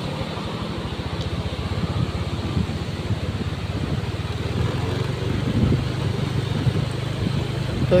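A vehicle engine running steadily at low speed, a low even hum, with some road and surf noise behind it.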